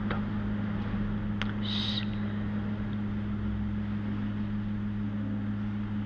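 A steady low hum with a faint hiss from the microphone and sound system, and a brief high squeak about two seconds in.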